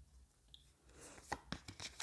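Tarot cards being handled: a quiet moment, then a few soft card taps and slides in the second half as cards come out of the deck.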